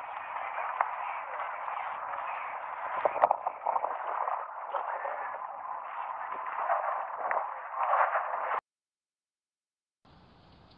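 House fire burning: a steady rushing noise with sharp crackles and pops, the strongest cluster about three seconds in and another near eight seconds. It sounds thin and tinny, and cuts off abruptly about a second and a half before the end.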